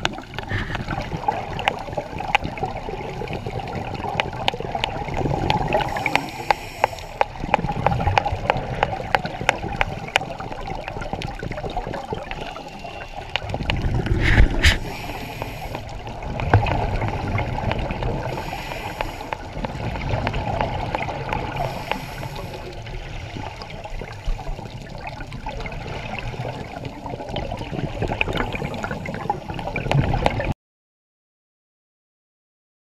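Underwater sound heard through a camera housing: scuba regulator breathing, with exhaled bubbles rushing out every four seconds or so over a steady watery wash and a constant crackle of small clicks.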